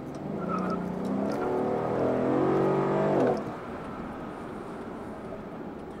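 Mercedes-Benz SL500's twin-turbo V8 accelerating hard, heard inside the cabin: its deep note grows louder and climbs in pitch, then drops back to a quieter steady cruise just over three seconds in as the throttle lifts.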